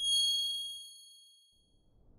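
A single high, bell-like chime struck once and ringing out, fading away over about a second and a half: the closing ding of a logo sting sound effect.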